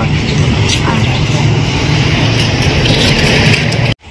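Loud, steady outdoor rumble with a hiss over it, cutting off suddenly just before the end.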